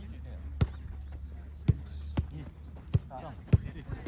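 A football being kicked from player to player in a rondo passing drill on artificial turf: about five sharp kicks spaced half a second to a second apart. A low steady hum runs underneath and fades about three seconds in.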